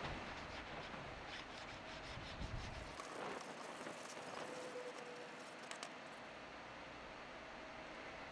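Faint rubbing of a hand-held sanding pad along the freshly cut edge of a plastic mixing tub, smoothing it, with a few light clicks.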